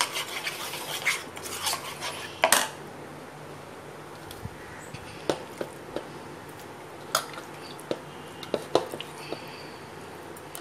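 A steel spoon stirring and scraping a thick spice paste against a bowl, clinking on the sides for the first few seconds with one sharp clink near the end of the stirring. After that come a few separate clinks and taps as the spoon and bowls are handled.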